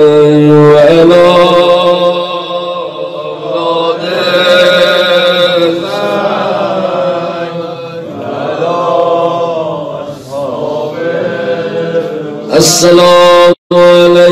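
A man chanting a mournful Shia elegy into a microphone, in long, wavering held notes. The sound cuts out for an instant near the end.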